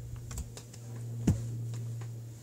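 A few light taps and knocks of hands striking each other and the body during signing, the sharpest about a second and a quarter in, over a steady low hum.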